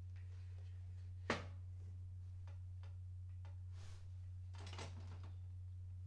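A sheet of photo paper being handled and slid into the top feed slot of an Epson inkjet printer: a sharp tap about a second in, then a few faint rustles and slides. A steady low hum runs underneath.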